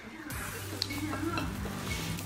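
Knife cutting through a bar of soap on a ceramic saucer, with light scraping and a couple of small clicks of the blade against the plate.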